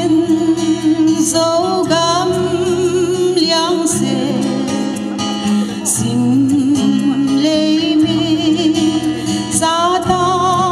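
A woman singing into a microphone over instrumental backing, her voice wavering with vibrato on held notes.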